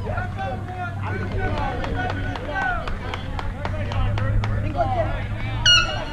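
Spectators and players talking and calling out over a steady low hum, then near the end one sharp, ringing metallic ping of an aluminum bat striking the ball.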